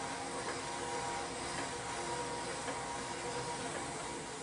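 Steady whirring hum of gym exercise machines running, with a few faint held tones over an even noise.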